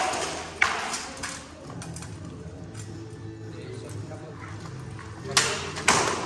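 Sword blows landing on armour and shield during armoured sword sparring: sharp metallic strikes, three in the first second and a half and two more near the end.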